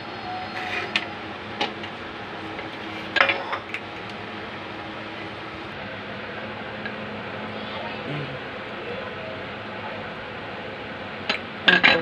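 Light clicks and clinks of kitchen items being handled on a marble countertop while slices of bread are pressed flat by hand, over a steady background hiss; the loudest click comes about three seconds in.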